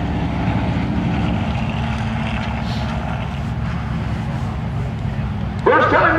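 Late model stock car engines running slowly, a steady rumble with no revving. A voice comes in near the end.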